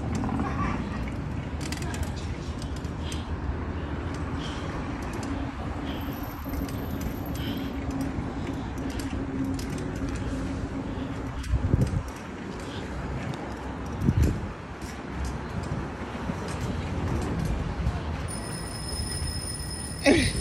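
Rumble of wind and road noise while riding a bicycle over brick paving, with a couple of knocks around the middle. A high ringing tone starts near the end.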